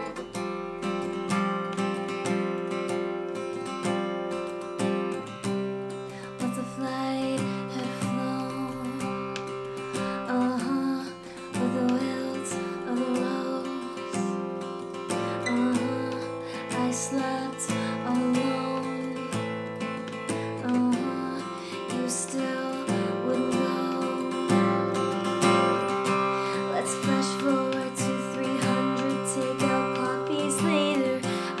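Fender Sonoran acoustic guitar strummed in a steady down-up pattern through the chords C, Fsus2, Am and Fsus2. About ten seconds in, a woman starts singing over it.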